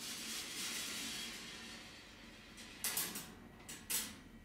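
25 mm glass marbles rolling along the powder-coated metal tracks of a rolling ball sculpture: a soft rolling rush in the first second or so, then a few sharp clicks of balls knocking against each other or the track near the end.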